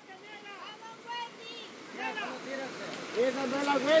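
Faint voices over the steady rush of a flowing river, with the voices growing louder over the last second.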